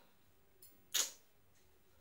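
Near-silent room tone broken by a single short, sharp click about a second in, with a fainter click just before it.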